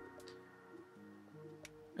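Faint chillhop background music: soft held chord notes with the drum beat dropped out, and two faint ticks.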